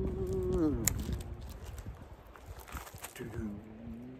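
A man humming a held low note that slides down and fades about a second in, over a low wind rumble on the microphone. A second short hummed note slides in near the end.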